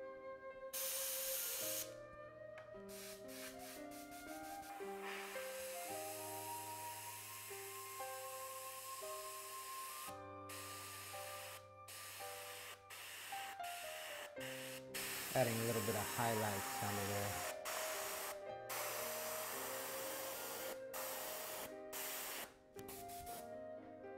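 Iwata Eclipse bottom-feed airbrush spraying paint in on-off bursts of hiss, a short one about a second in and then several longer ones a few seconds each with abrupt stops, over soft background music.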